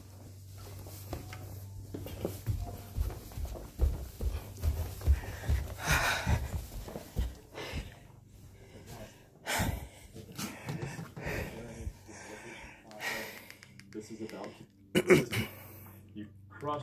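A man panting heavily as he hurries up carpeted stairs, with a run of dull footstep thuds through the first half.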